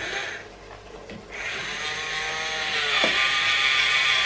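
Battery-powered automatic can opener running around the rim of a tin by itself, a small geared motor whirring steadily. It starts about a second in, and its pitch dips briefly near the three-second mark.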